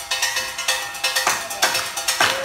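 Live band music: quick drum and percussion strikes, several a second, over steady held keyboard tones.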